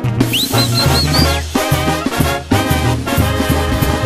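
Mexican banda playing an instrumental passage between sung verses: brass over a low tuba-style bass line, with a high note sliding up and wavering in the first second or so.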